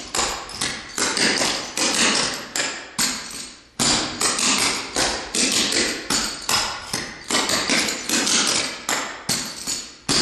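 Clogging shoes' metal jingle taps striking the floor in quick, rhythmic patterns as the Birmingham clogging step is danced through, with a short break a little over three seconds in.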